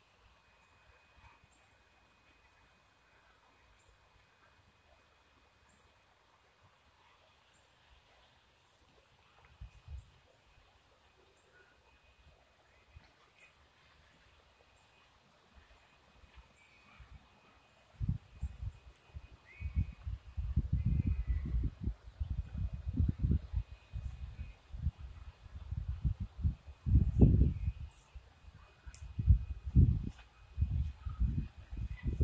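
Quiet outdoor air with faint, scattered high bird chirps. From a little past halfway, loud, irregular low rumbling buffets of wind on the phone's microphone take over.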